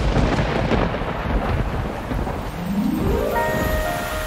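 Thunderstorm sound effect: a rumble of thunder over heavy rain, starting suddenly. Near the end a rising run of notes leads into music.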